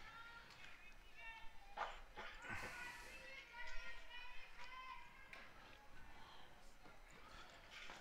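Faint, distant voices of players and spectators calling out around the softball diamond, with a couple of light knocks.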